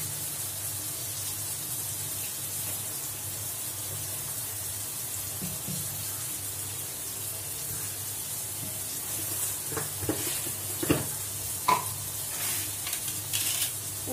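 Diced brinjal and plantain frying in oil in a metal kadai, a steady sizzle with a low hum underneath. A few short knocks come in the last few seconds.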